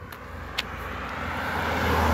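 A motor vehicle passing by, its engine hum and road noise growing steadily louder towards the end. A single sharp click sounds about half a second in.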